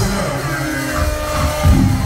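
Live band playing with no vocal: drums and held keyboard notes, with a heavy drum hit at the start and another near the end.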